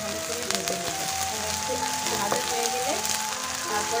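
Sliced onions and tomato pieces sizzling in hot oil in a nonstick wok as a wooden spatula stirs them, a steady frying hiss. Background music with held, stepping notes plays alongside.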